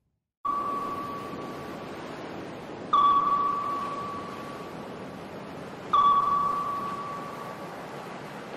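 Three ringing ping tones about three seconds apart, each starting sharply and fading over a second or two, over a steady hiss: an electronic sound effect under a logo outro.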